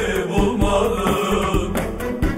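Turkish folk song in the Şanlıurfa sıra gecesi style: a sung vocal melody over instrumental accompaniment, with regular drum strokes.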